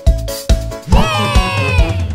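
Upbeat cartoon series intro jingle with a steady beat about twice a second. About a second in, a high, voice-like cry slides downward in pitch for most of a second over the music.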